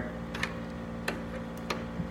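Three light clicks, roughly half a second apart, from handling a spinning reel and rod, over a steady low hum.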